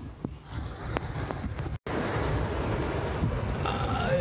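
Heavy rain beating on a car's roof and windshield, heard from inside the cabin, with a few sharp drop impacts in the first part. After a short break the rain noise comes back louder and denser.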